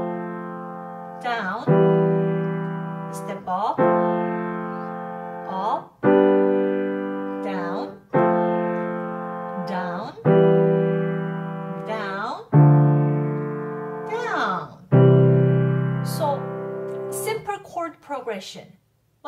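Piano chords played with the left hand, about one every two seconds, each triad stepping up or down the scale from a C major chord. The chords are played without the sustain pedal, so each one fades or stops short when the hand lifts before the next.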